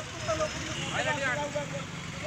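Street ambience: a steady low traffic rumble with faint voices of a crowd in the background.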